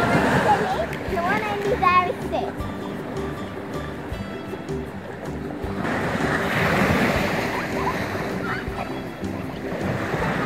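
Small sea waves breaking on a sandy shore under background music with steady held notes. The surf swells louder about six seconds in. Brief sliding, wavering calls sound in the first two seconds.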